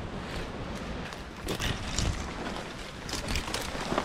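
Branches and dry scrub rustling and scraping while someone pushes through dense bush on foot, with wind buffeting the microphone. A few sharper crackles come in clusters about halfway through and near the end.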